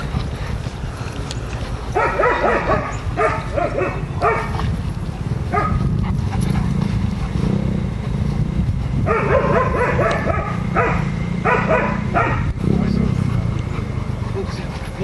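A dog barking in short bouts, about two seconds in and again from about nine seconds, amid people talking, over a steady low rumble.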